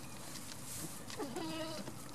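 A goat bleating once: a single pitched call of about half a second, starting a little over a second in.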